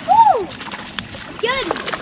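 A hooked fish thrashing at the surface beside a boat, splashing water in several quick bursts through the middle, while it is reeled in. Short excited voice calls come right at the start and again about a second and a half in.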